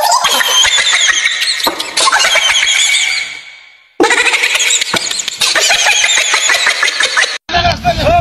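Shrill, high-pitched squealing laughter from several people. It fades out about halfway, breaks off in a short silence, then starts again abruptly. Near the end it cuts to a different, lower-pitched voice sound.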